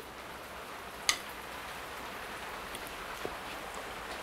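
Pouring rain, heard as a steady, even hiss, with one sharp click about a second in.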